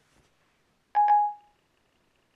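Siri's stop-listening chime on an iPad: a short double electronic chime about a second in, sounding as Siri ends listening to the spoken question and starts processing it.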